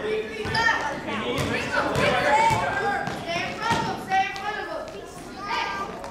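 Many children's and adults' voices talking and calling out at once in a school gym, no words clear. A basketball bounces on the gym floor now and then.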